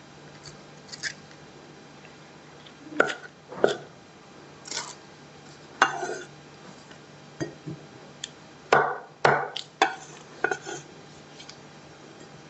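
Cleaver on a wooden chopping board: a dozen or so irregular knocks and short scrapes, starting about three seconds in, as vegetables are cut and moved about. A faint steady low hum runs underneath.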